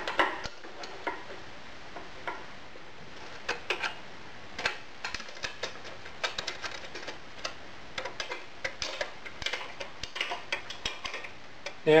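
Small irregular metallic clicks and ticks as a hand tool works the clamp screws on an aluminium plate being fitted to a metal rod. The clicks come scattered, thicker in the second half.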